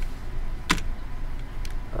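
A single sharp click about two-thirds of a second in, the click that advances the presentation slide, with a fainter tick about a second later, over a steady low room hum.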